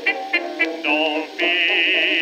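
1920s dance-band jazz played back from a 78 rpm record, heard in a narrow, thin range with almost no bass or top. A few short clipped notes give way, about a second in, to a long held melody note with a wide vibrato over the band.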